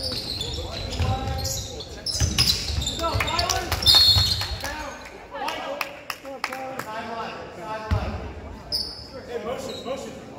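Live basketball in a gym: the ball bouncing, sneakers squeaking on the hardwood, and players and spectators calling out over the hall's echo. A short, high referee's whistle about four seconds in stops play for a foul.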